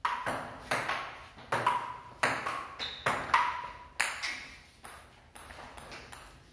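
Table tennis rally: the ball clicking back and forth off paddles and bouncing on a wooden table top, about a dozen hits at roughly two a second, some bounces leaving a short ring. The hits grow quieter near the end.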